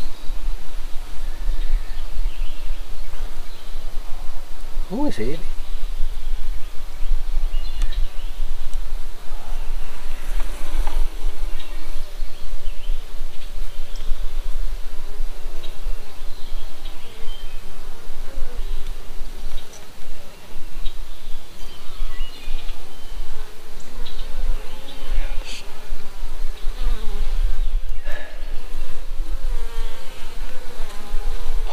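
Honeybees buzzing around an open two-frame nucleus colony as a frame crowded with bees is lifted out for inspection, with a steady low rumble underneath.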